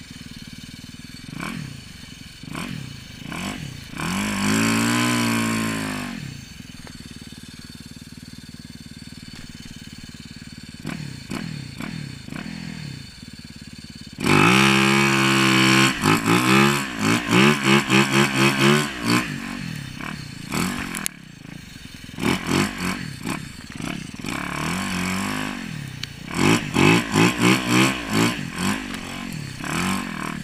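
2016 Yamaha YZ450FX single-cylinder four-stroke engine on a snowbike track kit, revving in bursts as it pushes through deep powder: one rev about four seconds in, a loud stretch of repeated hard revving around the middle, and a run of quick throttle blips near the end, dropping back to a low run in between.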